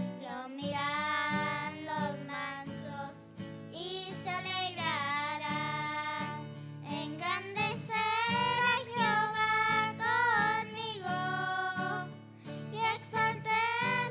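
Young girls singing a song, accompanied by a strummed acoustic guitar.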